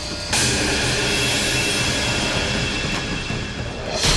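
Dramatic background score: a sudden swell hits about a third of a second in, then a sustained hissing, grating sound effect with a thin steady high tone over a low rumble. Another hit lands right at the end.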